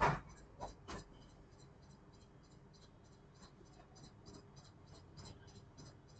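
Quiet classroom with a sharp knock at the start and two lighter knocks within the first second, then a steady rapid high-pitched ticking, about five ticks a second.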